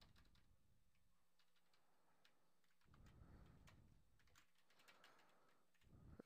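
Faint computer keyboard typing: a few scattered key clicks over near-silent room tone.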